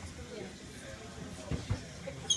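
Inside a Merseyrail electric train at an underground platform: a low cabin rumble with faint voices, and two dull knocks near the end.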